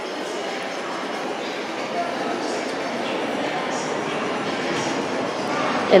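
Steady background noise of an indoor public space, with faint distant voices.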